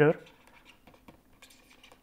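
Faint scratching and light ticks of a stylus writing on a pen tablet, with a few ticks clustered about a second and a half in.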